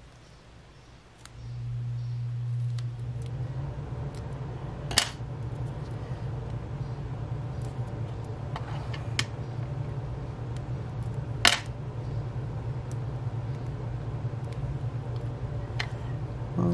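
A steady low hum that starts about a second in and carries on, with a few sharp clicks of small tools and foam squares being handled on a craft mat, the loudest about five and eleven seconds in.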